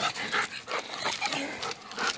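A dog making a few soft, short vocal sounds.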